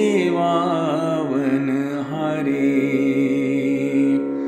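A solo voice singing a line of a Gurbani shabad (Sikh scriptural hymn) in a slow, drawn-out, ornamented melody over a steady instrumental drone.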